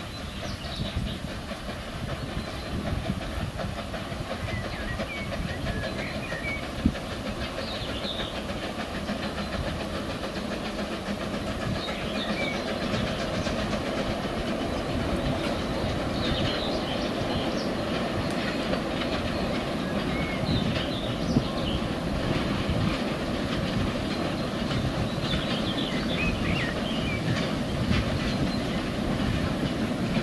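Henschel Monta narrow-gauge steam locomotive and its coaches running slowly on 600 mm track, coming closer: a steady running noise from the wheels on the rails that grows gradually louder, with a couple of single sharp clicks.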